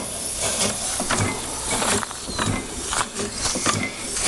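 Small vertical steam engine (4-inch bore, 6-inch stroke) running on compressed air rather than steam, its exhaust puffing and hissing in a steady rhythm.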